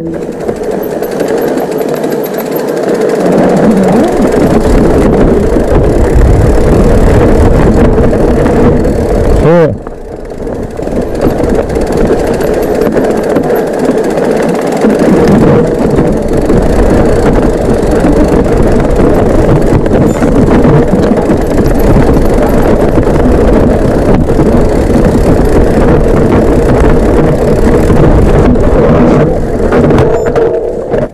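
Mountain bike riding over a rough dirt-and-stone forest trail, heard from a camera on the rider: a loud, continuous rumble and rattle of tyres and bike over the bumps. The noise drops briefly about ten seconds in, then carries on.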